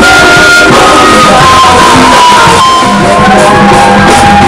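Live band playing loud rock music: electric guitar and keyboard over a steady bass line, with held melody notes, recorded at a level near full scale.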